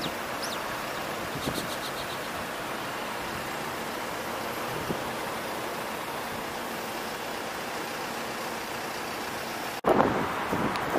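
Steady wind and road noise from a motorcycle riding through city traffic, a constant even rush with no clear engine note.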